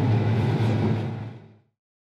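John Deere S700 Series combine engine running, heard inside the cab as a steady low hum, fading out to silence about a second and a half in.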